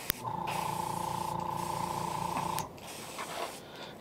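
Airbrush spraying metallic purple paint onto a fishing lure: a click, then a steady hissing hum with a held tone for about two and a half seconds that stops sharply.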